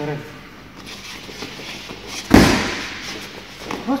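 A boxing glove punch landing on a leather focus mitt: one sharp smack about halfway through.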